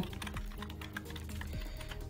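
Typing on a computer keyboard: a quick run of keystroke clicks.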